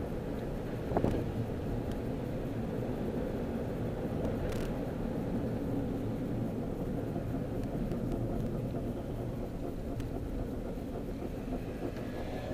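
Steady road and engine noise inside a moving Honda car's cabin, with a short thump about a second in.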